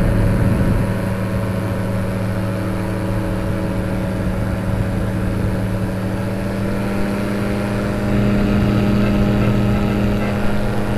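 Powered parachute engine and propeller running steadily in flight, its note held level. About eight seconds in it grows louder as the throttle is opened a little.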